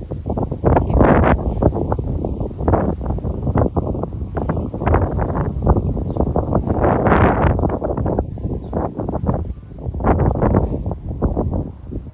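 Wind buffeting the microphone, with rustling, loud and gusty throughout.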